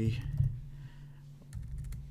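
Computer keyboard keystrokes: a short run of key presses near the start and another from about one and a half seconds in, over a steady low hum.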